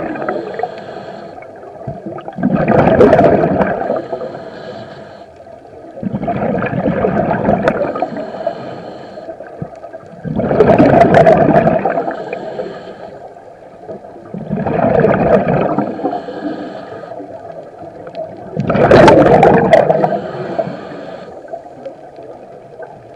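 Scuba diver breathing through a regulator underwater: each exhalation is a loud gurgling rush of bubbles, and a quieter hissing inhalation comes between them, the cycle repeating about every four seconds.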